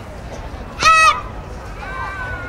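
A child karateka's kiai: one short, loud, high-pitched shout about a second in, given with a strike of the kata.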